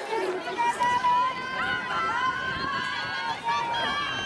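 Spectators cheering on a sprint race: several high-pitched voices shouting long, overlapping calls.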